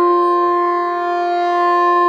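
Harmonium holding one long, steady note, its reeds sounding without a break.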